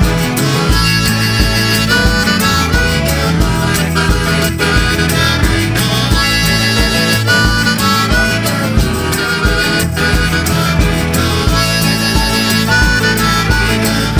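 Harmonica solo, played with both hands cupped around it close to the microphone, over a band's accompaniment with a steady beat.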